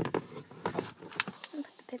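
A jar of pickles being handled and set down: a few short knocks and scrapes spread over the two seconds.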